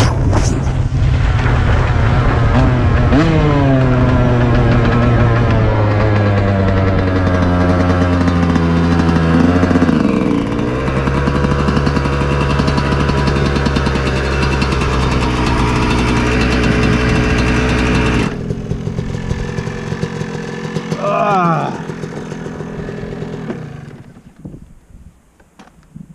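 Yamaha YZ125 two-stroke dirt bike engine running on the trail, its pitch stepping down several times in the first ten seconds, then holding steady. About eighteen seconds in it drops away abruptly, gives a short rising rev a few seconds later, and fades low near the end as the bike comes to a stop.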